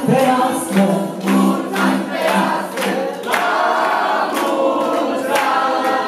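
A group of voices singing with backing music, and hands clapping in time, about two claps a second.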